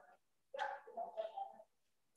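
A faint, indistinct voice: a few short pitched sounds starting about half a second in and stopping by 1.7 s.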